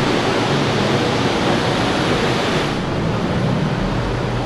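Steady rushing water noise from a deeply flooded roadway, with a faint low hum underneath.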